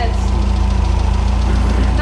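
Tofaş car's carburetted four-cylinder engine idling steadily with the bonnet open, a low even rumble. A mechanic is setting the idle with a timing gun because the engine had been stalling: the carburettor cannot compensate for the altitude by itself.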